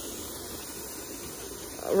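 Steady hiss of steam venting from the open vent pipe of a dial-gauge pressure canner, the venting that purges air before the weighted regulator goes on.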